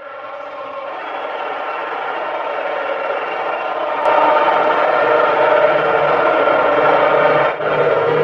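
Football stadium crowd noise, a steady roar that fades up over the first few seconds, then holds.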